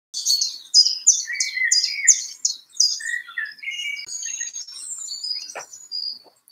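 Birds chirping and singing. A run of about eight quick, high, down-sliding chirps, a little over two a second, sounds over a lower warbling phrase, and is followed by varied shorter calls and trills.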